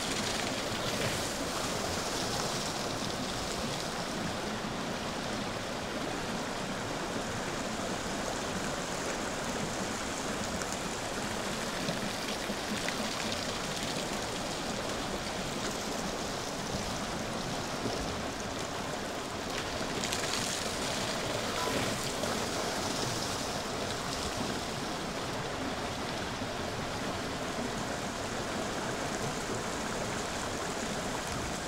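Steady rush of a shallow river flowing over rocks, mixed with water splashing from the paddles of a slowly turning wooden water wheel and running down its wooden flume. The splashing grows a little brighter for a couple of seconds near the start and again about two-thirds of the way through.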